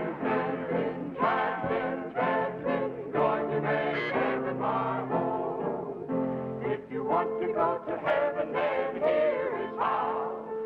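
Male vocal group singing a religious song in harmony, with band accompaniment.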